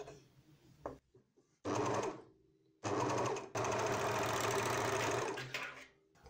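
Janome MyLock overlocker sewing a narrow rolled hem: a short run of about half a second, then a steady run of about three seconds.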